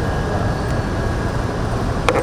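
Steady outdoor background noise with a strong low rumble and no distinct events.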